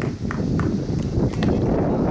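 Wind rumbling on the microphone, with about five sharp clicks or claps scattered through the first second and a half.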